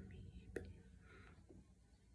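Near silence, with faint breathy whispering and one light click about half a second in.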